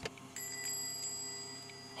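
A shop door bell struck once just after a door click, its metallic ring holding and slowly fading.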